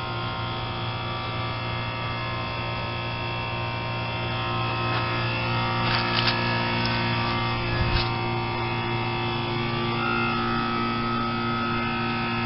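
2005 Duro Guard outdoor heat pump running with a steady electrical hum, in what looks like a defrost cycle that will not end: the owner cannot tell whether it is defrosting or malfunctioning. A few light clicks come near the middle, and a higher steady tone joins about ten seconds in.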